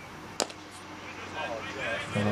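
A single sharp crack of a cricket bat striking the ball, about half a second in, followed by faint voices of players out on the field.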